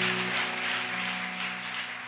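Audience applause, slowly fading, over instrumental background music with long held notes.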